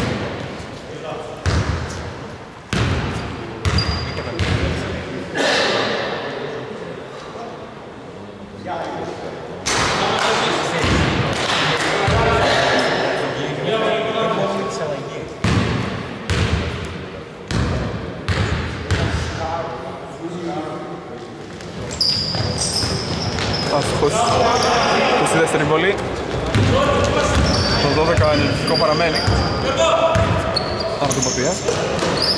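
A basketball bouncing again and again on a hardwood court, each bounce echoing in a large gym, with voices talking over it.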